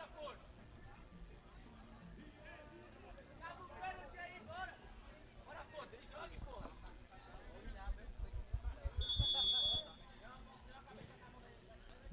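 Referee's whistle: one steady blast of a little under a second, about nine seconds in, signalling that the free kick may be taken. Faint shouting of players runs underneath.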